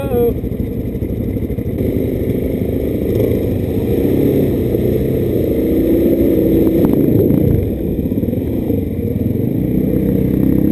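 Single-cylinder supermoto engine pulling through a shallow stream crossing, the revs rising and falling, with water splashing around the bike. A short voiced exclamation comes right at the start.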